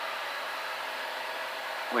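Steady cabin drone of a Columbia 350 in level flight, its Continental six-cylinder engine, propeller and airflow blended into an even hiss with no low rumble, as picked up through the cockpit headset intercom.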